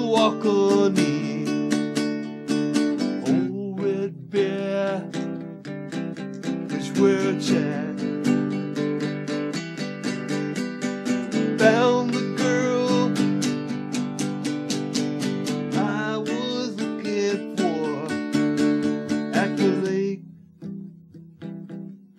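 Acoustic guitar strummed in steady chords with a man singing over it in phrases. About twenty seconds in the singing stops and the playing drops to a softer, sparser strum.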